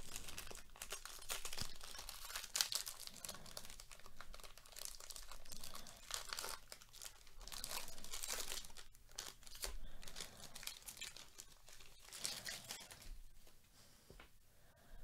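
Foil wrapper of a Topps baseball card jumbo pack being torn open and crinkled by hand: a run of irregular crackling rustles that thins out near the end as the cards are pulled free.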